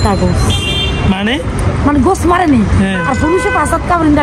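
A person speaking over a steady low rumble of street traffic.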